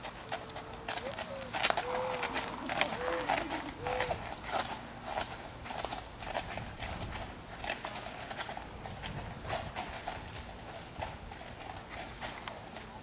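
Hoofbeats of a Tennessee walking horse walking on gravel, a steady run of clip-clops, with a few short voice-like sounds in the first few seconds.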